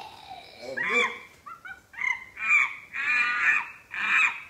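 A woman's voice imitating monkey chatter: a run of about five high, squeaky calls in quick succession from about a second in, the last one drawn out longest.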